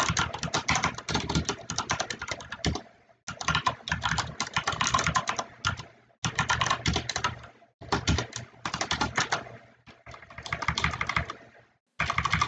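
Computer keyboard typing in quick runs of keystrokes, about five bursts separated by short pauses.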